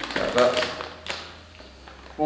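A few sharp taps and crinkles from a plastic potato-chip bag being handled, around a brief spoken word at the start.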